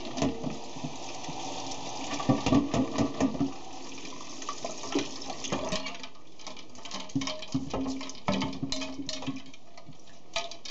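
Tap water running into a metal bowl of freshly dyed quills in a stainless steel sink while a spoon stirs and scrapes through them, with many scattered clicks and scratches, rinsing out the loose dye. The water stops about six seconds in, leaving the spoon clicking against the bowl and quills.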